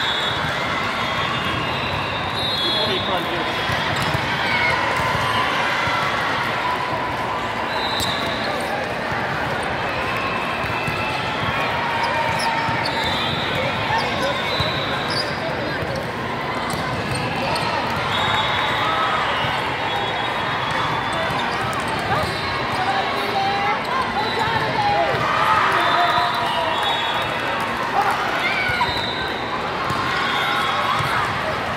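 Echoing din of a busy indoor volleyball tournament hall: many overlapping voices talking and calling, with volleyballs being struck and bouncing on the courts and scattered sharp knocks throughout a rally.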